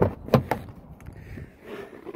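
Car rear door being handled: three quick clicks and knocks in the first half second, then quieter handling noise.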